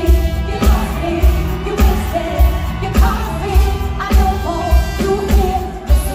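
Live band playing a pop-soul song with a female lead singer, over a steady kick-drum beat just under two beats a second.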